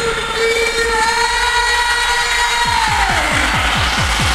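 A eurodance track in a breakdown: a held synth chord, then from about two and a half seconds in a kick-drum roll that gets faster and faster, building back into the beat.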